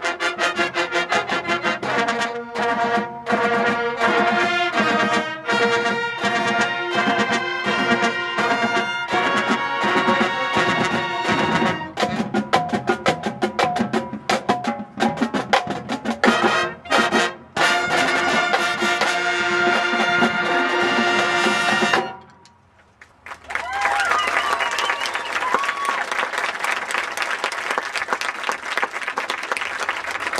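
High school marching band playing, with brass (trumpets, trombones) and percussion, then cutting off about two-thirds of the way in. After a short pause, clapping and cheering follow.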